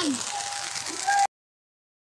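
Steady outdoor background hiss with a faint thin tone, then the audio cuts out completely about a second in: a dropout from a lagging phone livestream.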